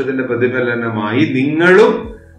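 Speech only: a man talking in Malayalam.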